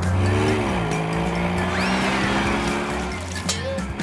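Vehicle engine sound effect, cartoon style, of a motorhome driving off: the engine note drops in pitch in the first second, then holds steady and fades out a little after three seconds. It plays over background music, with a short rising whistle about two seconds in.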